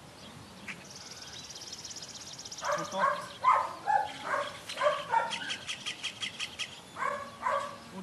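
A Belgian Malinois puppy giving a series of short, rapid barks in two bursts, with a bird trilling and chattering in the background.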